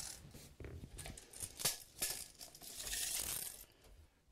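Handling noises from the blind's top sealing strip being measured and marked: a few light clicks and knocks, then about a second of rustling near the end.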